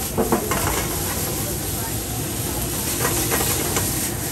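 Squash, broccoli and okra sizzling in a wok over a high gas flame as the wok is tossed, a steady hiss with a few short knocks or scrapes of the pan.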